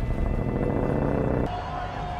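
Film soundtrack: score music over a dense low rumble. The rumble drops away about one and a half seconds in, leaving a single held note.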